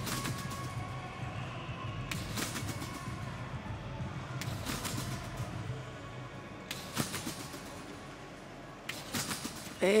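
Competition trampoline thumping and its springs rattling about every two seconds as a gymnast rebounds high, over a steady low arena hum.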